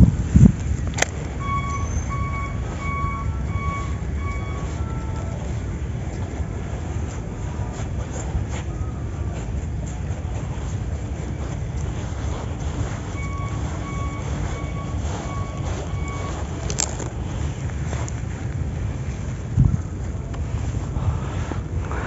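Steady low rumble of wind buffeting the microphone. A short run of evenly spaced high piping notes comes in twice, about two seconds in and again in the middle.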